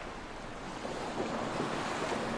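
Steady rush of wind and open sea water, a little louder in the last second.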